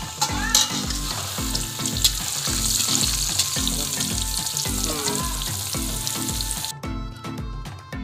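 Hot oil sizzling steadily as cubes deep-fry in a large aluminium wok, with a metal spatula clinking against the pan a couple of times. The sizzling cuts off suddenly about seven seconds in.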